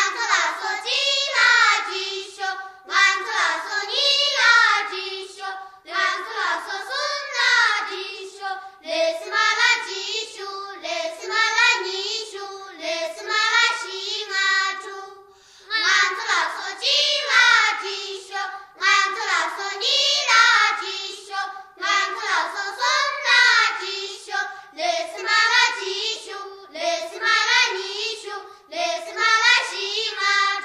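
High unaccompanied singing of a Tibetan folk song, sung in short phrases with a brief pause about halfway through; the song begins suddenly after silence.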